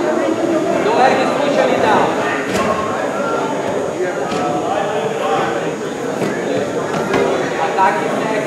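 Overlapping voices of a crowd talking and calling out at once, with no single clear speaker.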